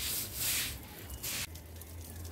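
Grass broom scrubbed over a wet cement slurry on a concrete roof, working the cement into the surface as a waterproofing coat. There are two brushing strokes: a long one at the start and a shorter one that stops about one and a half seconds in.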